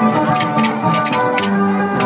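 Traditional Andean festival music: held melody notes over a regular drum beat.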